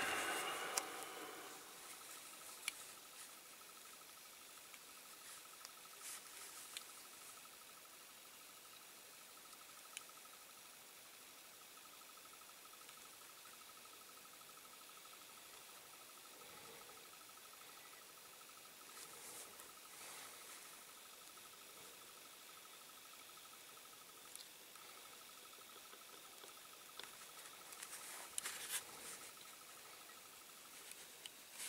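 Mostly near silence, with a few faint small clicks and scratchy rustles as fingers and a small screwdriver press a plastic part into a die-cast toy body. A rustle comes near the middle and another, busier one near the end. A faint steady high-pitched tone runs underneath.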